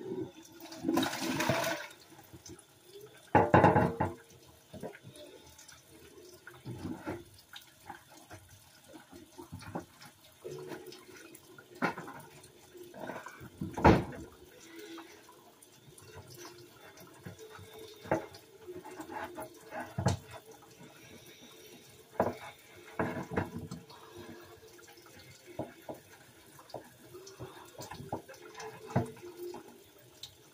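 Dishes being washed by hand at a kitchen sink: water running in short spells, with repeated knocks and clatters of dishes being handled, the loudest about four seconds in and again about fourteen seconds in.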